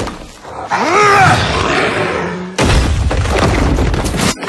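Film action sound effects: a loud cry with a rising-then-falling pitch about a second in, then, just past halfway, a sudden heavy rumbling crash of stone masonry breaking apart and falling.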